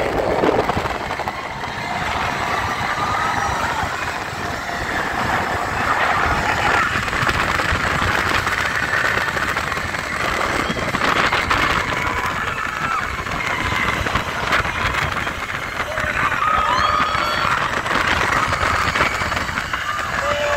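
Rushing wind and running noise of an open-top Radiator Springs Racers ride car speeding along its track, steady throughout. Riders shout and whoop near the end.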